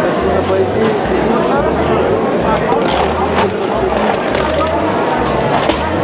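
Indistinct voices chattering in a busy market hall.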